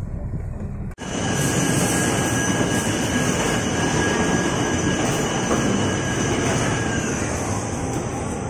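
A loud, steady rushing noise with a few faint high steady whines, starting after an abrupt cut about a second in. Before the cut comes a quieter low hum.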